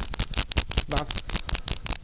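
Rapid, irregular clicking rattle, many clicks a second, set off by a Parkinson's tremor shaking with the deep brain stimulator switched off.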